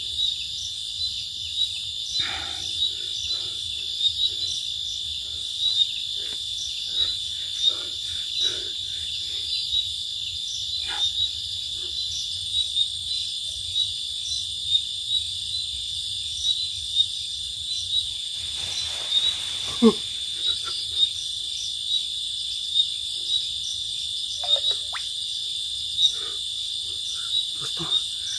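Night-time insect chorus: a steady high-pitched trill with regular chirps about twice a second. About twenty seconds in, a short, louder, lower sound falls in pitch.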